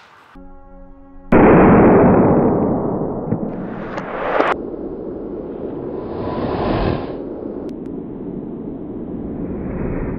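Outro sound effects: a short held tone, then a loud explosion-like burst about a second in that slowly fades, with a rising whoosh that cuts off sharply partway through and a rumbling noise bed after it.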